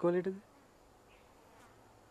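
A man's voice ends a word within the first half second. After that comes quiet outdoor ambience with a thin, steady, faint insect drone in the background.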